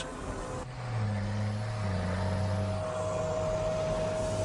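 Stryker eight-wheeled armored vehicle's diesel engine running steadily as it drives at speed, with a steady high whine over it. The engine note comes in under a second in and drops slightly in pitch about two seconds in.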